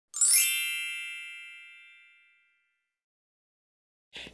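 A bright chime sound effect: a quick upward shimmer into a ringing chord that fades out over about two seconds.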